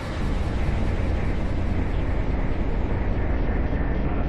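A steady, loud low rumbling noise, its upper hiss gradually dulling.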